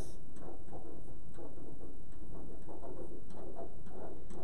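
Dry-erase marker writing a word on a whiteboard: a run of short, irregular squeaks and scratches.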